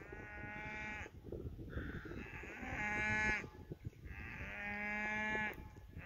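Cattle mooing: three long, steady calls, one at the start, one midway and one near the end.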